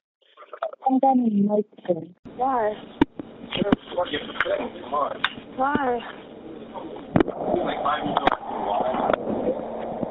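A recorded 911 emergency phone call played back: voices heard down a narrow telephone line. The first two seconds are a noise-filtered version, clean and broken up. From about two seconds in the unfiltered original plays, with a steady hiss under the voices and several sharp clicks.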